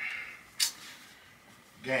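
Clothes hanger handling as a garment slips off its hanger: one short sharp click about half a second in, with a soft rustle of cloth. A man's voice comes in near the end.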